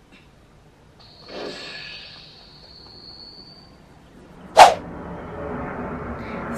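A soft hiss with a thin, high, steady whine lasting about three seconds, fading out; then a short, loud whoosh a little past halfway.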